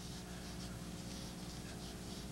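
Faint scratching of a watercolour brush laying paint onto paper, over a steady low hum.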